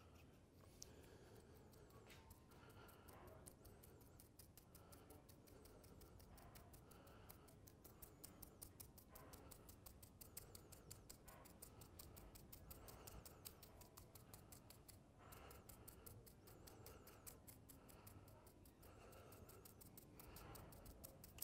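Near silence, with faint repeated scratching of a paintbrush scrubbing watered-down brown acrylic paint into the recesses of a painted figure's armour.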